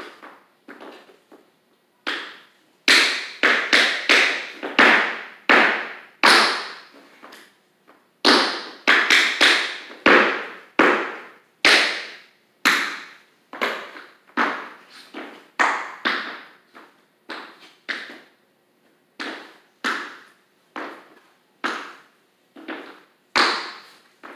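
A steady run of sharp percussive taps, about two a second, each ringing briefly in a reverberant room, with a few heavier thuds among them.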